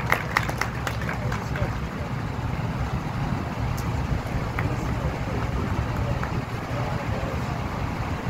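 A small group clapping briefly, dying away within the first couple of seconds. After that comes a steady low outdoor rumble with faint crowd chatter.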